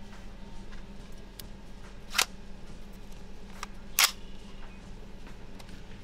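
An AR-style rifle being loaded: a few small metallic clicks and two loud sharp clacks about two seconds apart as the magazine is seated and the action is worked to chamber a round.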